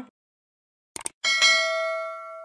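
Subscribe-button animation sound effect: two quick mouse clicks about a second in, followed by a notification bell ding that rings with several overtones and slowly fades.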